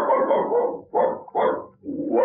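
A man imitating a dog in a radio-drama sound part: one long dog-like cry, then two shorter ones.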